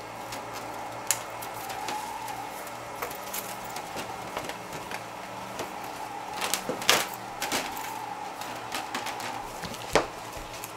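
A cloth wiping a plexiglass picture-frame pane with Windex, giving soft rubbing, with scattered clicks and knocks as the frame is handled. The loudest knock comes about seven seconds in.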